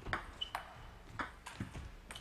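Table tennis ball in a rally: about four sharp clicks of the celluloid-plastic ball on rubber rackets and the tabletop, roughly half a second apart, with a short high squeak early on.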